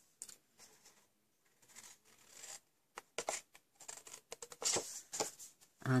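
Card stock being handled, with faint rustling at first, then a run of short sharp clicks and brief scrapes from about halfway through as scissors are brought to the sheet to cut off its corners.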